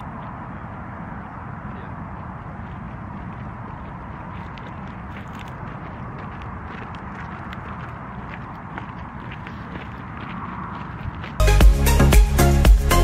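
Steady outdoor wind noise on the camera microphone, with a low rumble and faint scattered ticks. Electronic dance music cuts back in suddenly near the end.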